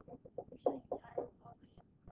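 Pen stylus tapping and scratching on a pen-display screen while a word is handwritten: a quick, irregular run of short clicks and brief scrapes.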